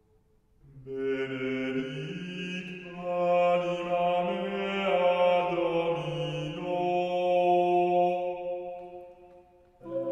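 Unaccompanied Gregorian chant: voices sing one long chanted phrase with held, slowly moving notes. It begins about a second in after a brief pause and fades out just before the end.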